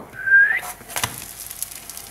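Pancake batter sizzling quietly in an oiled nonstick frying pan, with scattered small crackles. About half a second in, a short, rising whistle-like squeak.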